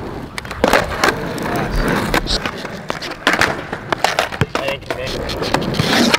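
Skateboard wheels rolling on asphalt, with several sharp clacks of the tail popping and the board landing during flat-ground tricks.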